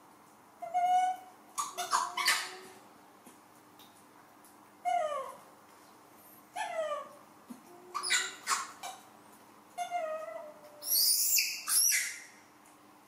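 Baby macaques giving a series of short, high-pitched coo calls, several falling in pitch, with a louder, harsher squeal near the end.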